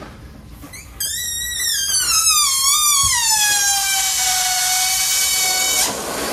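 Air squealing out through the stretched neck of an inflated rubber balloon. The squeal starts about a second in, wavers and falls in pitch, then holds a steadier lower note before cutting off just before the end.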